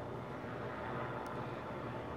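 Steady low engine hum with a faint even hiss: vehicle noise with no sudden events.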